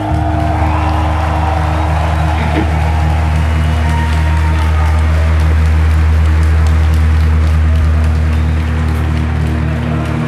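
Live rock band between songs: a steady low amplified drone is held from the instruments under crowd applause and noise in the hall, while a guitar is retuned.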